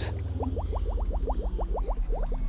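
Cartoon bubbling sound effect: a quick run of short rising bloops, about eight a second, over a steady low hum, as animated bubbles are blown out on the breath out.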